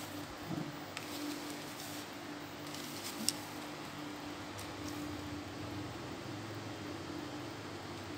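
Faint handling noise of a cloth rod bag and a carbon telescopic pole rod being drawn out and laid on a wooden table, with a light tap about three seconds in, over a steady low hum.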